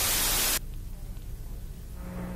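Loud analog TV static hiss that cuts off suddenly about half a second in, leaving a low hum.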